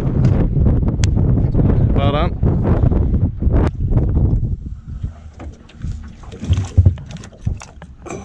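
Wind buffeting the microphone through the first half, with a short voice exclamation about two seconds in. It then drops quieter, with a few handling knocks and one sharp thump about seven seconds in.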